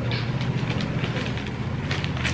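Rustling of a folded saree being handled and refolded, in short scattered rustles over a steady low hum.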